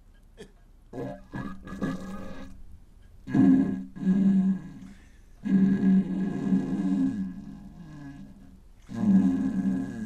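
A man's laughter, distorted and drawn out by editing, coming in about four low-pitched bursts.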